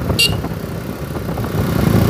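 Steady low engine and road rumble from a motor vehicle travelling along a paved road, with a brief high chirp about a fifth of a second in.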